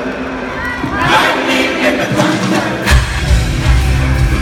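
Arena concert crowd cheering and screaming over a live rock band. The band plays without its bass at first, then the drums and heavy bass come back in with a hit about three seconds in.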